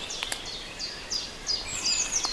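Forest songbirds twittering: many short, high, falling chirps repeating rapidly. Two brief clicks come about a quarter second in.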